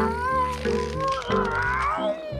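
A cartoon cat's long, drawn-out meow that wavers and rises in pitch toward the end, over background music.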